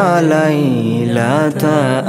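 Islamic devotional song (nasheed) sung in long, wavering held notes over a steady low hum.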